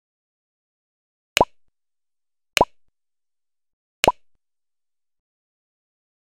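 Three short pop sound effects of an end-screen like/subscribe/bell animation, spread over about three seconds, each a sharp click with a brief rising blip.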